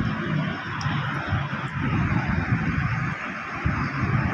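A steady rumbling noise, uneven and fluttering in the low end, with no speech.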